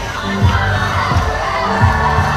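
Dance music with a heavy, repeating bass line, with a large crowd shouting and cheering over it.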